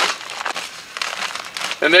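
Paper vacuum dust bag crinkling and rustling as it is unfolded and pushed down into a stainless-steel shop-vac canister.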